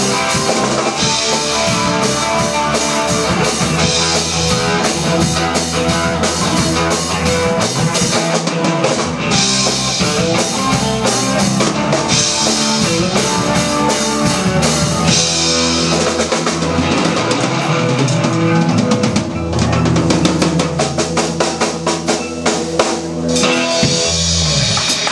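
Live rock band: a drum kit played hard with steady beats under guitar, with a run of rapid drum hits near the end.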